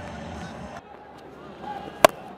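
Stadium crowd noise, a steady low murmur that drops away suddenly about three-quarters of a second in, leaving fainter ground noise with a few distant voices.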